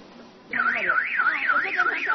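An electronic alarm warbling steadily up and down in pitch, about three sweeps a second, starting about half a second in.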